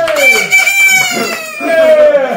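Several men hollering and whooping, one of them a high, held falsetto yell that falls slightly in pitch, with a few hand claps.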